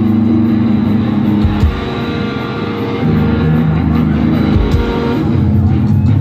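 Live band music played loud over a concert PA, picked up from the crowd: sustained low notes and chords that shift about a second and a half in and again near the middle.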